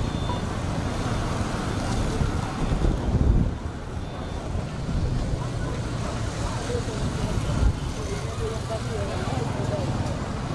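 Roadside street sound: vehicles running and passing as a steady low rumble, with wind buffeting the microphone in two stronger gusts, about three seconds in and near eight seconds. Faint voices of people on the street can be heard in the background.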